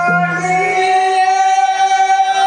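A voice holding one long sung note, steady in pitch, with lower held notes sounding beneath it for about the first second, in Rajasthani folk singing.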